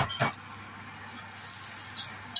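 Two quick knocks of a metal spatula against a wok, then the faint steady sizzle of chopped garlic and dried shrimp frying in oil, with light scraping as the spatula stirs near the end.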